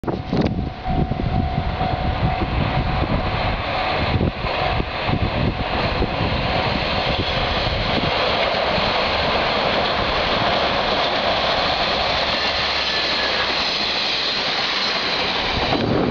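Two-car KiHa 147 diesel railcar train running across a steel girder bridge, a loud steady rumble of wheels and engine. Irregular low thumps in the first few seconds.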